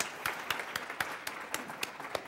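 Audience applauding at the close of a talk, individual hand claps standing out and thinning toward the end.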